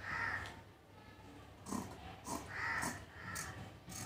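Crows cawing several times in the background, while scissors cut through folded cotton fabric with short snips of the blades.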